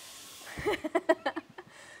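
Laughter: a breathy outburst, then a quick run of short 'ha' pulses about half a second in, trailing off into a breath.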